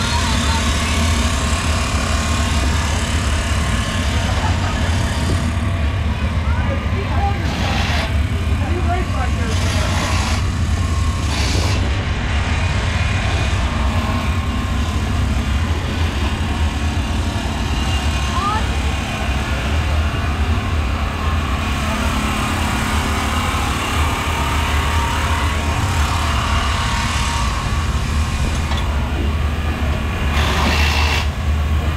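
Steady low rumble of race-car engines in a dirt-track pit area, with indistinct voices mixed in.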